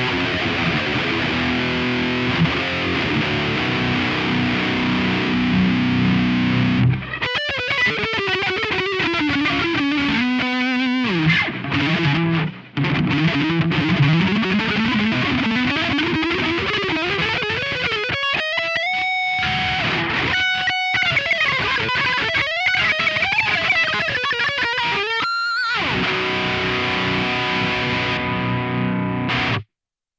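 Electric guitar through a Lone Wolf Audio Leaded Answer distortion pedal, played with heavy distortion. It opens with about seven seconds of thick distorted chords, moves to single notes that slide and bend in pitch with short breaks between them, returns to chords and stops just before the end.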